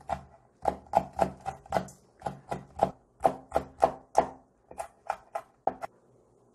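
Kitchen knife finely chopping cheongyang chili peppers on a wooden cutting board: a steady run of sharp knocks about three a second, stopping just before the end.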